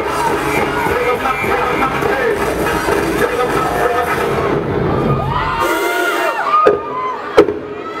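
A dance-routine music mix plays loudly over the PA, with an audience cheering. About halfway through, the dense beat drops out, leaving gliding high-pitched sounds and then a few sharp, loud hits.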